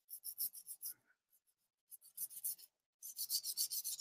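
Takeda knife blade being stroked back and forth on a whetstone, sharpening its backside bevel: faint short scrapes in quick runs, a cluster in the first second, a few more around two seconds in, and a faster, steadier run near the end.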